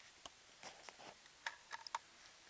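A handful of faint, sharp clicks and ticks at irregular intervals over a quiet background, the small handling noises of equipment being moved; no shot is fired.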